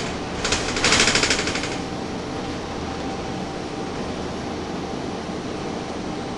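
Cabin of a Gillig Phantom transit bus on the move: a steady drone from the running bus and its HVAC and cooling fans, broken about half a second in by a rapid rattling clatter lasting a little over a second.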